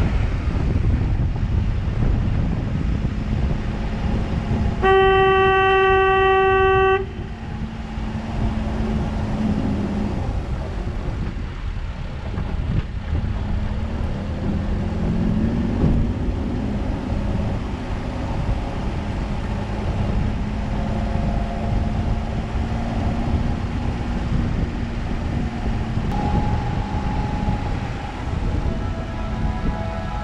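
Car driving on a winding mountain road, a steady low rumble of engine and tyre noise, with a single car-horn blast about two seconds long about five seconds in. The horn is the loudest sound.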